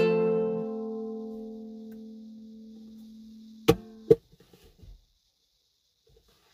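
The final strummed ukulele chord rings and slowly fades. A little over halfway through, two sharp knocks come about half a second apart and cut the ringing off.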